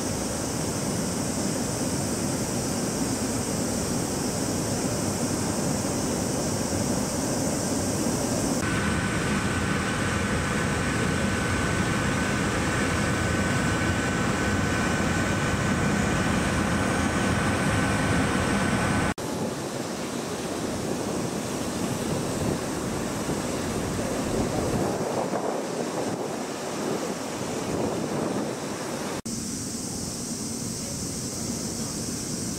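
Steady outdoor dockside ambience: wind on the microphone over a steady low rumble. A thin, steady high whine runs through the middle stretch, and the background changes abruptly three times where the shots are cut.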